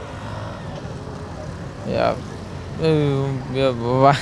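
Steady city-street traffic noise with a low hum. A man's voice breaks in briefly about two seconds in, and a few words of speech follow in the second half.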